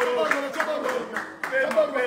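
A group of men clapping hands in a quick rhythm over loud, overlapping voices of celebration.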